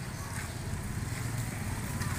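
Small motorcycle engines running along the street, a steady low rumble that grows a little louder.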